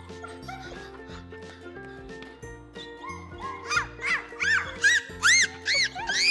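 Background music, joined about three seconds in by a run of short, high-pitched yaps from a small dog. The yaps come roughly two a second and grow louder and higher toward the end.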